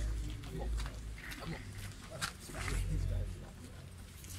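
Indistinct voices of people talking in the background over a low rumble on the microphone, with a sharp click a little past the middle.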